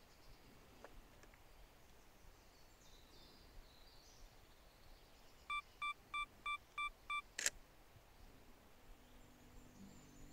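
Sony A7R III mirrorless camera beeping six quick times, about three a second, as its self-timer counts down, then its shutter firing with a single sharp click.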